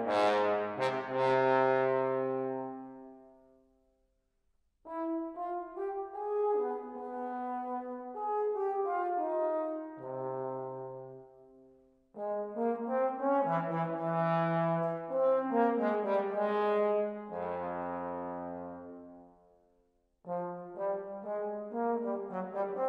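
Solo trombone with chamber orchestra playing a classical concerto: three phrases of sustained brass notes over low bass notes. Each phrase dies away to silence, at about four seconds in, around twelve seconds and near twenty seconds, before the next one enters.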